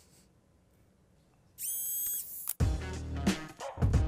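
Near silence, then about a second and a half in a short, high whistling tone with many overtones sounds for about a second, a transition sting for the commercial break. It cuts off abruptly as advertisement music with a heavy bass beat begins.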